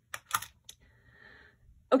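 Three short clicks within the first second, the middle one loudest, as a small plastic tape measure is handled and set aside, followed by a faint soft hiss.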